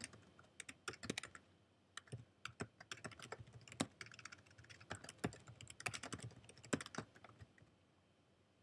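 A computer keyboard being typed on: light, irregular key clicks in quick runs as text is entered, stopping shortly before the end.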